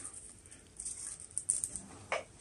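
Faint rustling and light rattling from handling: a foam ball fitted with thin iron wires being pressed onto the centre of a flower among organza petals. The small clicks come mostly in the second half.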